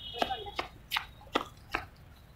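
Footsteps of a person running on concrete, passing close by: five sharp slaps about two and a half a second.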